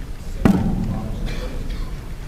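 A single sharp thump about half a second in, with faint voices murmuring after it.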